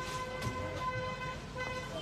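A faint, steady humming tone with overtones holds one pitch throughout, over low background noise.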